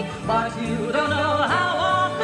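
Women's voices singing a Broadway show-tune duet, holding notes with wide vibrato over instrumental accompaniment.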